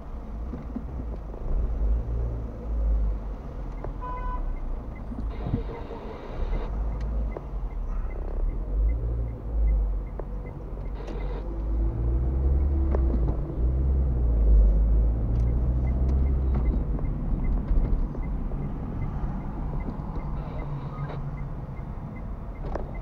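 Low rumble of a car's engine and tyres heard from inside the cabin while driving slowly in city traffic, rising and falling with speed.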